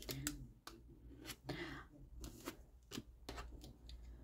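Faint clicks and a short scrape from a scraper dragged across a metal nail-stamping plate, clearing excess stamping polish off the engraved designs.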